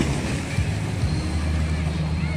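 Small boat's motor running steadily with a low hum, under a wash of water and wind noise.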